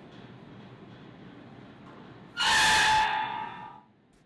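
A steel pallet-rack upright crashes onto the concrete floor about two and a half seconds in, a sudden clang that rings on in several metallic tones and dies away over about a second and a half.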